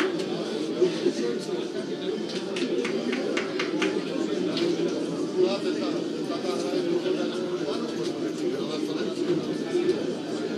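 Indistinct murmur of many voices with scattered sharp clicks, no single speaker standing out.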